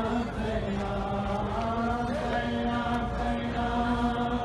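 A man's voice chanting a noha, an Urdu Muharram lament for Bibi Zainab, in long drawn-out held notes.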